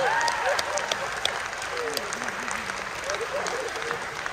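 Audience applause: many hands clapping, with a faint wavering voice over the clapping in the second half.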